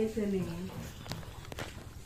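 Speech: a voice holds a drawn-out, falling syllable through the first part, then breaks off into a short pause broken by a couple of faint clicks.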